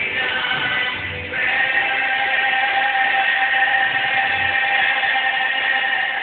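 Male gospel singer singing into a microphone over backing music, holding one long note from about a second and a half in. The recording sounds muffled, with no high end.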